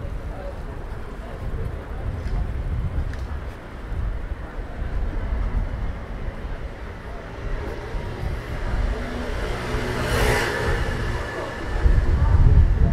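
Street ambience with a low traffic rumble and passers-by talking. A motor vehicle drives past close by, rising to the loudest sound about ten seconds in.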